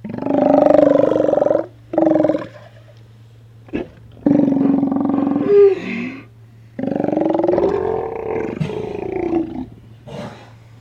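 Steller sea lions roaring: a run of loud, deep, drawn-out roars one after another, the longest lasting two to three seconds, with short pauses between them.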